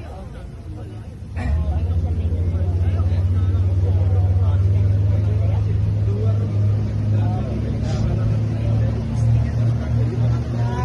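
Boat engine running with a deep, steady drone that suddenly grows much louder about a second and a half in, then holds.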